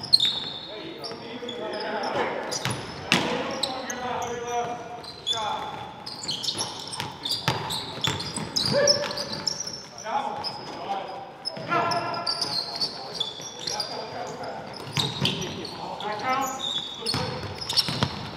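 Basketball being dribbled and bouncing on a hardwood gym floor during play, with the short high squeaks of players' shoes on the court.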